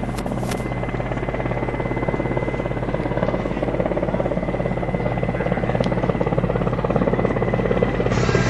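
Mi-17 helicopter flying in at low altitude. Its main rotor beats fast and steadily together with its turboshaft engines, and the sound grows a little louder as the helicopter approaches.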